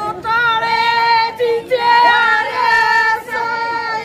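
Women's voices in a sung mourning lament, drawn out in long, wavering held notes with brief breaks for breath.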